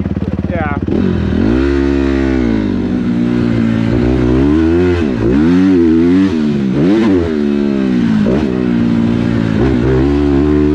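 Honda motocross bike's engine ticking over low, then pulling away about a second in. It revs up and down repeatedly as the throttle is opened and closed along the dirt track.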